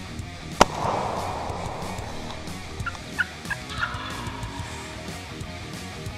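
A sharp crack, then a wild turkey gobbler's rattling gobble that fades over a second or so, followed by a few short high notes a couple of seconds later.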